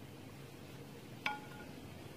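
A single sharp metallic clink about a second in that rings briefly, from a wooden rice paddle knocking against the metal inner pot of a rice cooker while salted rice is stirred.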